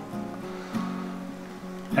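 Background music: an acoustic guitar playing a few held, plucked notes.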